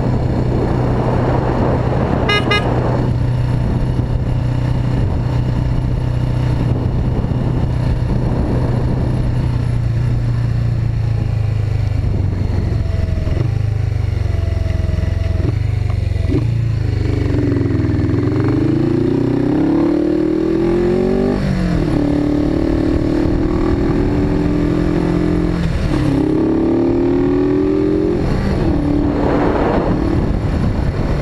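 Suzuki GS500E's air-cooled parallel-twin engine cruising at a steady note under wind rush, then dropping off as the bike slows for a turn. It then accelerates away through the gears, the pitch climbing and falling back at each shift. A brief high beep sounds about two seconds in.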